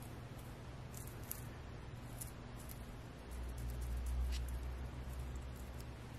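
Faint scattered ticks and crackles of silica gel crystals shifting as fingers dig a dried zinnia out of the granules and lift it out. A low rumble swells about three seconds in and fades before the end.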